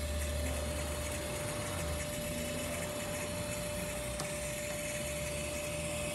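Fuel-injector test bench running at 3 bar: its pump and a Honda XRE 190 Keihin injector spray test fluid into a graduated cylinder, giving a steady hiss with a constant mid-pitched whine. A low hum underneath fades about two seconds in.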